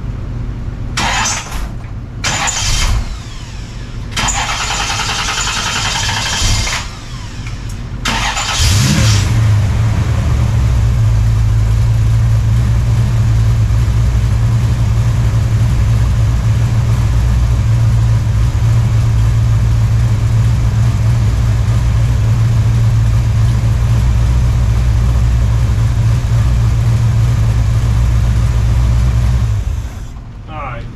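Small-block V8 of a 1969 Chevelle catching with a short rev after several brief rushes of noise, then idling steadily for about twenty seconds before it is shut off just before the end.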